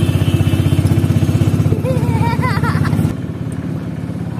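Engine of a small canopied passenger vehicle running with a rapid, even pulse, heard from inside among the riders, with a voice calling out about two seconds in. The engine sound drops away about three seconds in.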